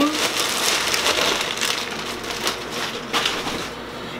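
Clear plastic packaging bag crinkling and rustling as a garment is pulled out of it and handled, loudest in the first couple of seconds and tapering off.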